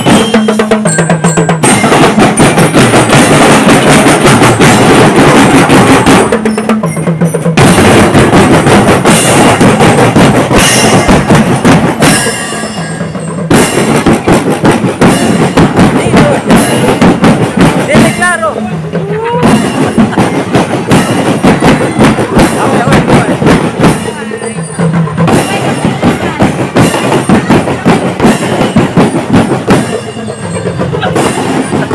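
A marching drum corps playing a loud, steady cadence on snare, bass and tenor drums, with short breaks about every six seconds.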